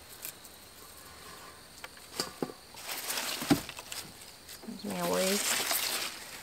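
Rustling of turnip greens and small clicks of a knife as turnips are trimmed by hand, with a soft thump about halfway through. A brief bit of voice comes near the end.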